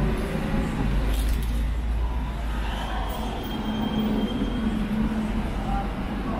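Steady low rumble of road traffic, with a vehicle engine humming on one steady note through the second half. A few faint clicks come about a second in.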